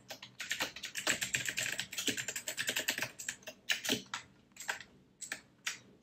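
Typing on a computer keyboard: a quick, dense run of keystrokes, thinning to a few separate taps in the last couple of seconds.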